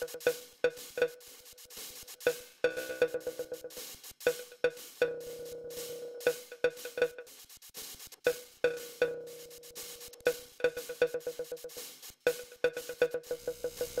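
A short, single-pitched electronic hit fed through the Blast Delay plugin, its echoes stepping through sequenced delay times. The repeats move between spaced hits, fast stutters and two smeared, held stretches.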